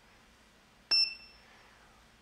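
ESD event detector giving a single short high-pitched electronic ding, with a sharp click at its start, about a second in; it fades within about half a second. The tone signals that the detector has picked up an electrostatic discharge as the charged metal plate is grounded through the tweezers.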